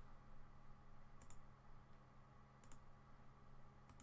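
Near silence: a steady low room hum with three faint, sharp clicks about 1.3 seconds apart.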